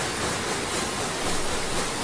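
A steady, even hiss of background noise with no rhythm or distinct events.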